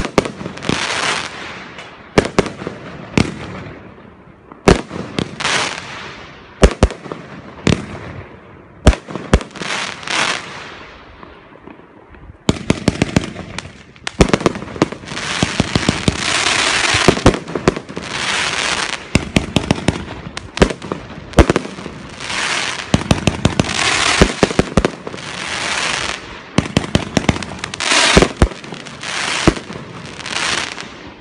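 Consumer fireworks cake firing: sharp launch bangs and bursts about once a second, each followed by a fading crackling hiss. About halfway through it shifts to a faster run of shots with dense, continuous crackling.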